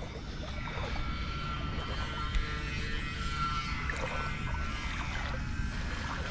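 A motorboat engine running steadily as a low, even hum.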